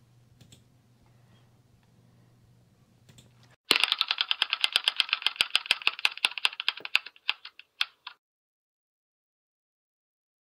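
Spinning on-screen name-picker wheel's ticking sound effect: a rapid run of clicks that starts suddenly, slows and spreads out over about four seconds, and stops as the wheel comes to rest. Before it, only faint room tone with a low hum.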